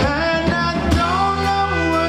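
Live soul band performing: a male lead vocal sliding between held notes over electric bass, drums and keyboard.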